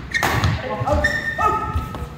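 Doubles badminton rally on a synthetic court: one sharp racket hit on the shuttlecock just after the start, then several short, high squeaks of players' shoes on the court mat.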